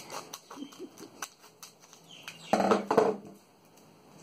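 Scissors snipping across the top of a foil booster-pack wrapper, a series of small sharp clicks and crinkles. A brief louder voice-like sound comes about two and a half seconds in.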